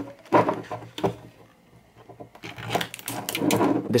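Cut rubber balloon being stretched over the rim of a small metal can to close it as a lid, the rubber rubbing against the metal, with handling knocks. Short rustles at the start, a lull, then a longer stretch of rubbing near the end.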